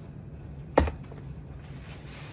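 A single short, sharp knock about a second in, over a steady low hum.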